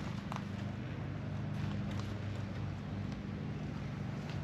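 A steady low hum from a running motor or machine, with a few faint clicks.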